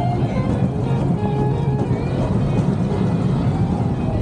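Steel roller coaster train running along its track with a steady, dense rumble, while the ride's music score plays over it.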